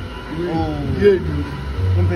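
A man speaking, with a low rumble underneath.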